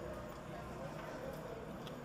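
Subway station ambience: background voices murmuring, with a few faint clicks, one near the end.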